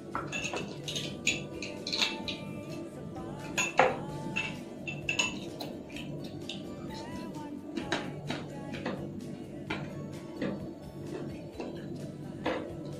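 Metal spoon clinking and scraping against a glass goblet of ice, a string of sharp clinks throughout, over steady background music.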